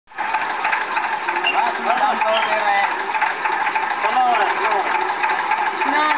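A small pump-set engine running steadily with a fast, even rattle, and people talking over it.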